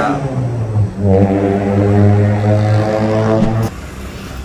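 A man's voice holding a long, level hesitation sound ('uhh') on one low pitch: a short one, then a longer one from about a second in that stops abruptly shortly before the end.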